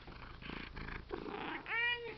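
Domestic cat purring with its fur brushing against the microphone as it rubs its head on it, then one short meow near the end.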